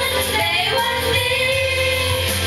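Women singing a Thai pop song karaoke-style into microphones, over a karaoke backing track.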